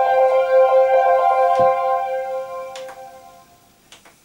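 Roland JD-XA synthesizer arpeggiator patch sounding a held chord with a fast fluttering pulse. It fades away over the second half to near silence. A few sharp clicks come as the front-panel buttons are pressed.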